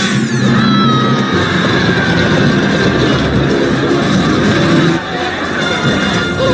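Film soundtrack: a loud, dense mechanical rumble and clatter mixed with music, dipping briefly about five seconds in.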